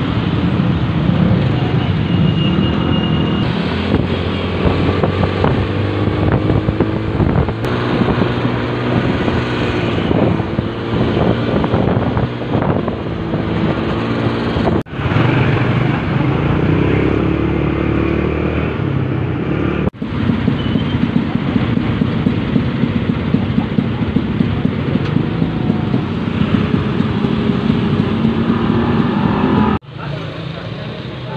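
Motorcycle engine running with surrounding road traffic, heard from a moving motorcycle: a loud, continuous engine-and-road noise that briefly drops out twice, about halfway through and again a few seconds later.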